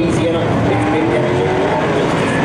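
A pack of USRA Modified dirt-track race cars' V8 engines running together under throttle, their pitch slowly rising through the turn.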